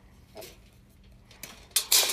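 Steel tape measure blades being handled: mostly quiet, with a faint knock about half a second in and a short, sharp scraping clatter near the end.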